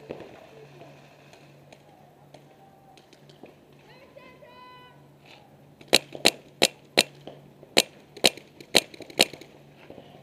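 Paintball marker firing close by, about eight sharp shots in uneven bursts over roughly three seconds, starting about six seconds in.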